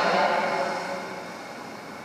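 A voice trailing off in a reverberant church, fading over about the first second and a half into quiet room noise.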